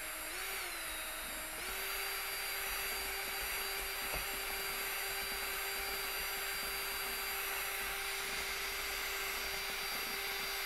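Cordless drill with a whisk mixing paddle running at a slow setting, stirring smoothing paste in a plastic tub as extra powder is worked in to stiffen it. The motor whine wavers briefly, steps up slightly in pitch about one and a half seconds in, then runs steadily.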